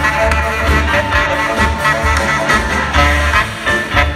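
Live swing-style band music played on stage, with piano and drums over a steady beat, heard from the audience.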